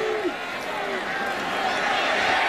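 Stadium crowd noise: a dense, steady roar of many voices that swells slightly in the second half as the play develops.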